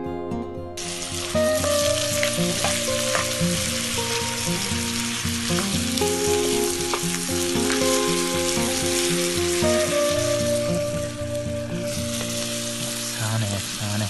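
Meat sizzling in a frying pan over a campfire, a dense hiss that starts suddenly about a second in, with background music under it.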